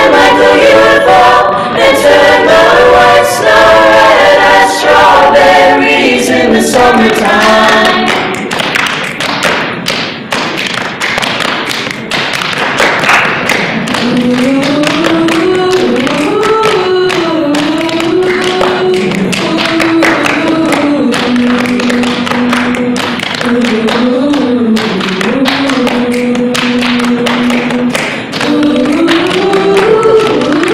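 School choir singing a cappella in close harmony. About eight seconds in, the chords thin to a single sung melody line over steady rhythmic hand claps.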